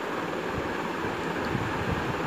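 Steady, even rushing noise with no distinct knocks or tones.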